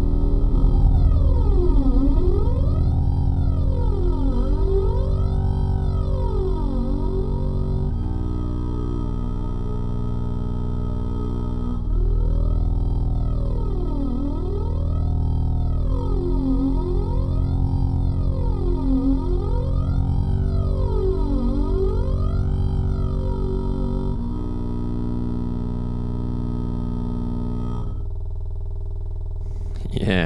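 Looped Estonian bagpipe run through effects into low, slow bass drones that sound like a cello or double bass. The drone chord shifts about every four seconds under a resonant sweep gliding down and up about every two seconds, and the top thins out near the end.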